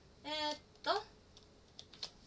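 A short wordless vocal sound, then a second brief one, followed by a few faint, separate clicks of typing on a keyboard.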